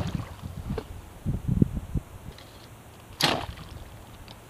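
A bowfishing bow shot once about three seconds in: a short, sharp snap of the string releasing the arrow. Before it, a few dull knocks on the boat.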